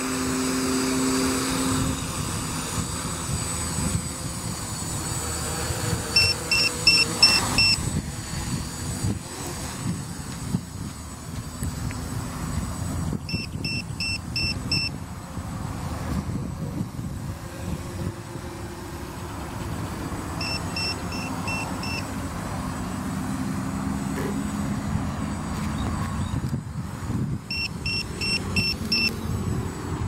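F330 quadcopter's motors and propellers whirring in flight, with the battery alarm sounding groups of five quick high beeps about every seven seconds: the warning that the pack has reached its set low-voltage threshold.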